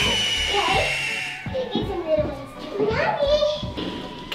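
Young girls' voices calling and chattering over background music. It opens with one long high-pitched squeal.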